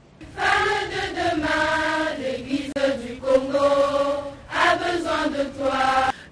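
A choir of schoolgirls singing a slow song in unison, in long held notes, with a short pause about four and a half seconds in.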